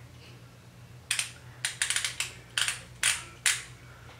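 About a dozen sharp plastic clicks in small groups as a Marc Jacobs lip gloss stick is handled and opened: the cap coming off and the tube being worked.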